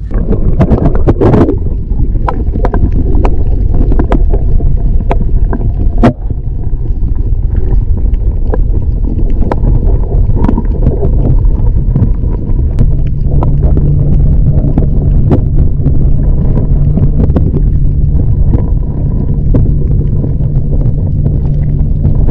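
Loud, muffled rumble of moving water and handling noise on a camera held underwater, with frequent small clicks throughout. A steady low hum joins in about halfway through.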